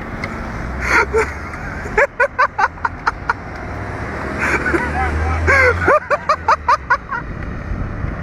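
People laughing in quick runs of short voiced bursts, about four a second: one run about two seconds in and another near the end. A steady low rumble runs underneath.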